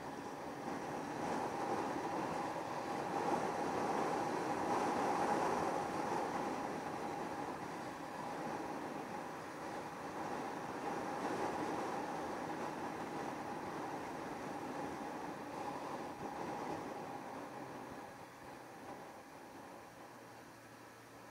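Yamaha YZF600R Thundercat's inline-four engine running at steady cruising speed, mixed with wind and road noise, easing off a little near the end.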